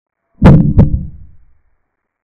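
Edited-in sound effect: two loud, deep thumps about a third of a second apart, the second fading out over about a second, timed to a capture on the chess board.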